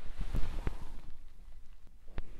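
Handling noise from a recording camera and clip-on microphone: a few dull thumps and knocks in the first second, then faint rustling and clicks.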